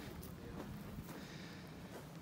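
Quiet outdoor background with a faint, steady low noise and no distinct event.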